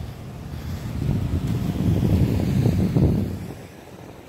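Low rumble of wind buffeting the microphone of a camera on a moving bicycle, mixed with road noise. It swells about a second in and fades away near the end.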